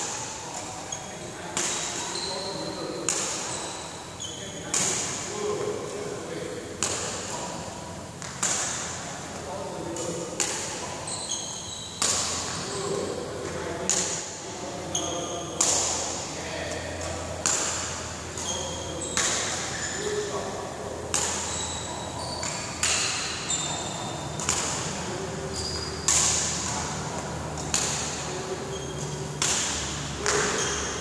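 Badminton rackets striking a shuttlecock in a steady rally, a sharp crack every second or two that echoes through a large hall. Short high-pitched squeaks come between the hits.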